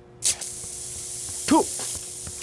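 A steady high hiss starts sharply about a quarter second in and keeps going, with a short rising-then-falling voice exclamation about a second and a half in.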